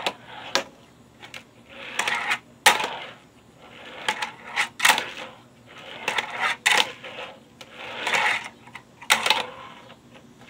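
Tech Deck fingerboard's tiny wheels rolling across a wooden tabletop and up a small quarter-pipe ramp in repeated short swells, broken by sharp clacks of the board's deck hitting the surfaces.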